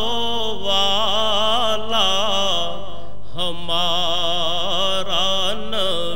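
A man's voice chanting a devotional recitation in a long, melismatic melody that waves up and down, with a short pause for breath a little past halfway.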